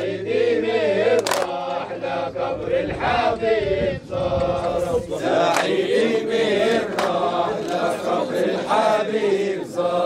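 A group of men chanting together in a traditional Arabic wedding chant, with sharp hand claps every second or two.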